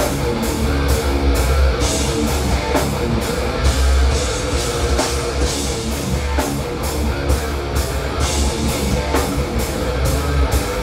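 A heavy metal band playing live: loud distorted electric guitars and bass over a drum kit, with a steady beat of cymbal hits about two to three times a second.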